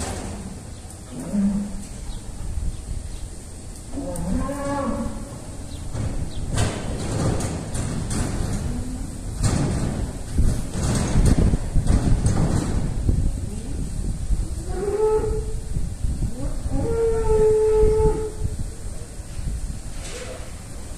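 Young cattle mooing several times: a short low moo about a second in, another call at about four seconds, and two higher calls near the end, the last one long and steady. In the middle comes a loud stretch of rough noise.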